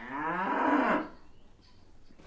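Cow mooing once, for about a second in the first half.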